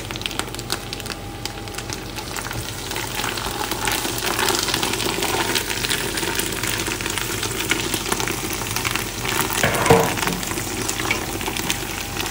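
Mint leaves, coriander and fried onions sizzling in hot oil in a stainless steel pot while a metal spoon stirs them, with light clicks and scrapes of the spoon against the pot. The sizzle grows louder a few seconds in, and there is one louder knock of the spoon near the end.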